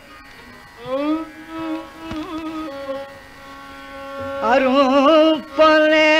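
Carnatic classical music: a male voice singing richly ornamented phrases over a steady drone. For the first few seconds a softer gliding melodic line, typical of the accompanying violin, carries the music, and the voice comes back loudly about four and a half seconds in.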